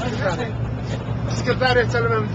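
Men talking in heated Arabic over the steady low drone of a bus engine, heard from inside the bus.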